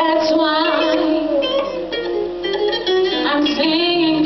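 A woman singing live into a microphone over a band with keyboard, holding long notes that waver in pitch.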